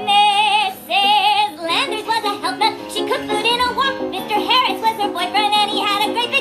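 A high voice singing a song over instrumental backing music, holding long notes with a wide, even vibrato.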